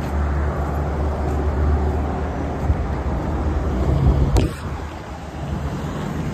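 Road traffic on a busy street: a steady low rumble of passing cars, with a single sharp click a little past four seconds in.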